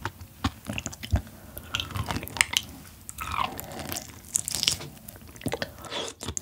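Close-miked mouth sounds of biting and chewing soft yellow stingray liver: an irregular run of short, sticky clicks and smacks.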